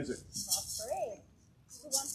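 Hand percussion shakers rattled in short bursts, about half a second in and again near the end, with a voice briefly heard in between.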